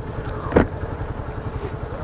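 Small-displacement motorcycle engine idling with a steady low pulsing rumble while the bike stands still. There is one brief sharper sound about half a second in.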